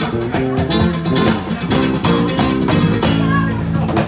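Live acoustic trio: two guitars playing plucked melody and chords, one a nylon-string acoustic, over a steady beat of hand strikes on a cajón.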